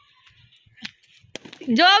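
Mostly quiet with faint distant children's voices and two short sharp knocks about a second in, then a child's voice speaking loudly close by near the end.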